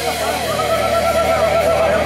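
Live rock band: a long held note wavering with vibrato over a sustained chord, with no drum hits.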